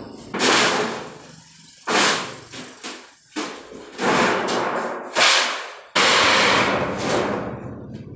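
Thin galvanized iron sheet flexing and rattling as hands press and handle it along its fresh bend, in about six loud, noisy bursts that start suddenly, the longest about six seconds in.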